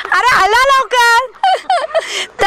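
A woman's high, shouted voice calling out the 'talyat, malyat' commands of the jumping game in quick succession, about four calls, each one a cue for the players to jump in or out.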